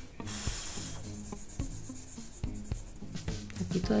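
A drawing tool rubbing and scraping on sketchbook paper, blending the dark shading of the hair. There is a brief, harsher stroke about half a second in, then shorter strokes and taps.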